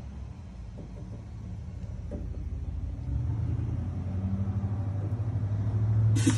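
Serdi 60 valve seat and guide machine running, its spindle turning a counterbore cutter in a cylinder head's valve-guide bore. A steady low hum grows louder and steps up about halfway through.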